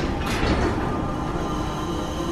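Passenger lift's doors sliding open over a steady low mechanical rumble.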